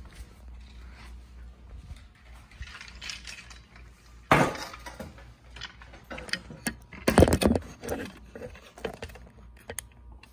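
Sharp knocks and clatter of hard objects being handled: one loud knock about four seconds in, then a quick cluster of clattering knocks around seven seconds, with scattered smaller clicks between.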